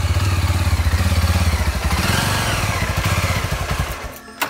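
A small street motorcycle's engine running close by with an even pulsing beat, easing slightly as the bike comes to a stop, then cutting off abruptly near the end.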